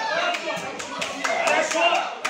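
A few spectators clapping in quick, uneven claps amid shouting voices from the crowd around a ring.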